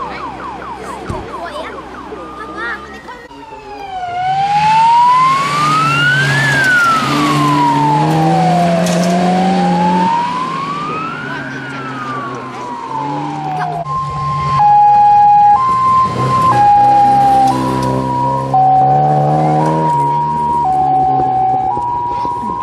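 Sirens on rally course cars passing on a gravel stage: a slow wailing siren rises and falls for about ten seconds, then gives way to a two-tone hi-lo siren switching between two notes about once a second. Car engines run underneath throughout.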